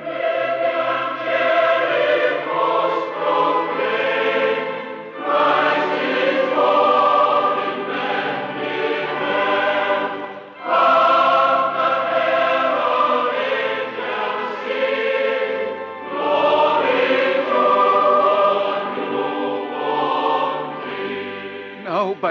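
A choir singing a slow sacred piece in four long, sustained phrases, each phrase separated by a brief breath.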